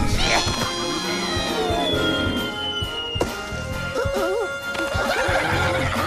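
Animated action-film soundtrack: music under a long high sound that slides slowly down in pitch for about three seconds, then short wavering squeals about four seconds in.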